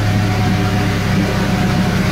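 Nissan 240SX's turbocharged KA24DET 2.4-litre four-cylinder engine idling steadily, running smoothly once warm. The owner suspects a leak somewhere, an exhaust leak or at the intake couplers.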